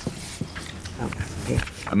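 Indistinct low murmuring voices with a few small knocks and handling noises picked up by the meeting microphones.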